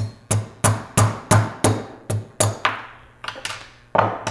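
Steel-headed hammer tapping a screw used as a punch, held in hemostats, to drive a press-fit pinion off a small brushless motor shaft over steel 1-2-3 blocks. About a dozen sharp metallic taps at roughly three a second, the last few lighter, until the pinion comes free.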